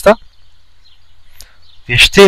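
A man's speaking voice breaks off just after the start, leaving about a second and a half of faint steady background hiss, then resumes near the end.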